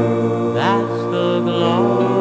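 Doo-wop vocal group singing held harmony chords on a 1961 record, with one voice sliding up in pitch a little past halfway.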